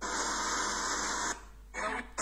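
A loud, even rushing hiss that starts suddenly, drops out for a moment about one and a half seconds in, then returns.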